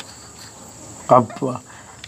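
Crickets trilling steadily in a high pitch, with a short spoken phrase from a man about a second in.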